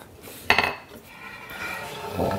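Wooden sawhorse parts being handled on a workbench: a sharp knock about half a second in with a brief ring, then scraping and knocking of wood on wood as a leg assembly is lifted.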